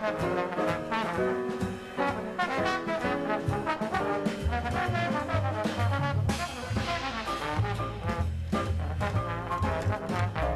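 Jazz trombone playing a quick, busy melodic line over piano, upright bass and drums.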